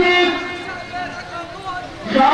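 A man's voice, loud for the first moment and then dropping to a softer, drawn-out stretch of held tones.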